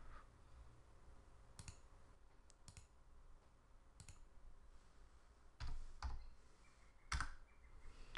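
Sparse, faint clicks of a computer mouse and keyboard as a desktop application is operated, with the louder clicks in the second half.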